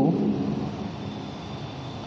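Steady background noise: a rumbling hiss that slowly fades a little, with a faint high-pitched whine running through it.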